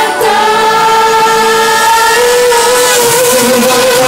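Live pop vocals from young male singers over a backing track: one long sung note held steady, stepping up slightly in pitch about halfway, with a harmony line above it.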